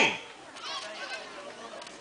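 A pause in an amplified speech at an outdoor rally. Faint, high-pitched voices, children's by their pitch, are heard in the background, most clearly about half a second to a second in.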